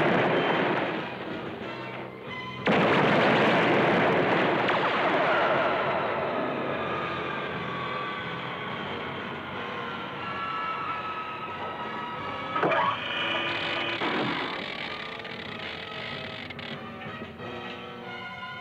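Cartoon science-fiction sound effects of a rocket ship over orchestral music. There are two loud rushing blasts in the first three seconds. Then a long engine drone fades slowly as its pitch sinks a little, and a short sharp burst comes about thirteen seconds in.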